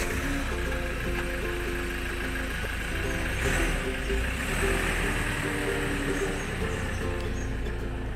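Ford Ranger pickup driving off, its engine running with a low steady rumble that swells in the middle, under background music.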